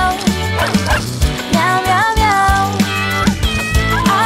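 Dog barks over the instrumental backing of a children's song with a steady beat.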